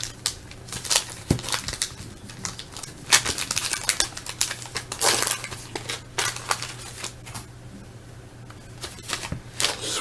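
Wax paper wrapper of a 1978 Topps hockey pack crinkling as it is torn open, and the cardboard cards rustling and clicking as they are handled: a run of scattered crackles and rustles, with a low steady hum underneath.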